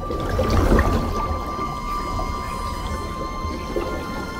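Film soundtrack of sustained, held high tones over a deep rumble that swells about half a second in and then settles.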